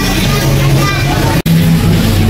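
Supermarket ambience of people talking with music playing, broken by a brief dropout about one and a half seconds in.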